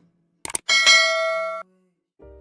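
Two or three quick clicks, then a bright bell ding that rings for about a second and cuts off suddenly: the notification-bell sound effect of a subscribe-button animation.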